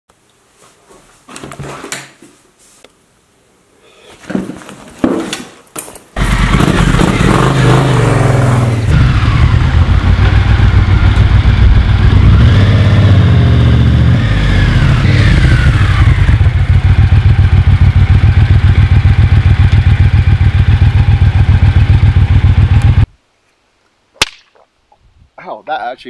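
Cruiser-style motorcycle engine running as the bike is ridden past, with a loud, even low exhaust beat and a few rises in revs. It starts abruptly about six seconds in and cuts off sharply near the end. A single sharp hand clap follows shortly after, then voices.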